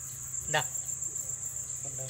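Steady, high-pitched chorus of insects running throughout, with a short voice sound about half a second in.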